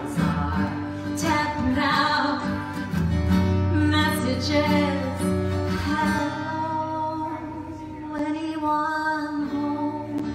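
A woman singing with guitar accompaniment in a live song performance, her voice holding long notes over the guitar.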